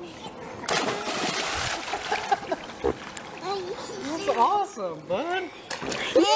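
A big splash as a child is tossed from a man's raised arms into a swimming pool: a loud rush of water about a second long, starting just under a second in. Voices follow in the second half.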